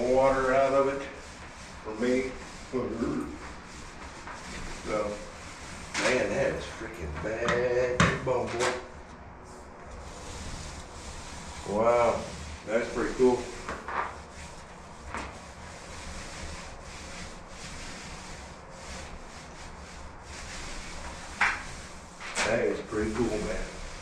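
Paint roller on a pressure-roller hose rubbing primer onto a drywall wall in repeated strokes, with scattered clicks and a steady low hum underneath.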